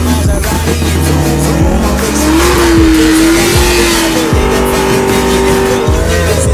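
A sports car engine revving, with tyres squealing through the middle, mixed with a hip hop music track with a heavy bass beat.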